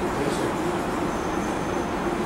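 Steady, fairly loud background rumble and hiss with a faint low hum, even throughout, with no distinct events.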